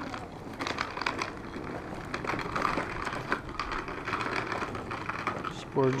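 Small plastic wheels of a toddler's ride-on toy rattling and clicking unevenly as it rolls over rough, cracked asphalt.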